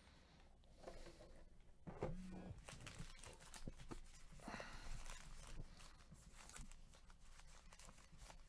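Faint crinkling and tearing of foil trading-card pack wrappers as a stack of hobby packs is handled and opened, with scattered small rustles and clicks.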